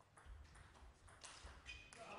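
Near silence: faint hall sound with a few faint light taps of a table tennis ball in play.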